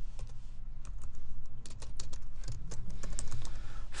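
Computer keyboard typing: a quick, irregular run of key clicks that gets busier about halfway through.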